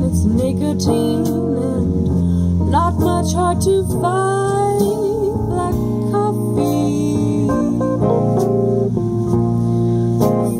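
Live jazz band playing a slow song: a woman singing with vibrato over acoustic guitar, keyboard and drums.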